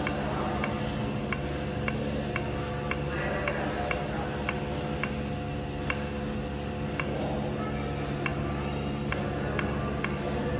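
Short sharp clicks, roughly one to two a second, from an Otis CompassPLUS destination-dispatch touchscreen kiosk as floor buttons are tapped one after another, over a steady low hum.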